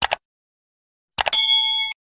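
Subscribe-button animation sound effect: a quick double mouse click, then about a second later three fast clicks and a bright notification-bell ding that rings for about half a second and cuts off near the end.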